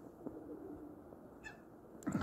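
Faint low cooing of domestic pigeons, with one brief high squeak about one and a half seconds in.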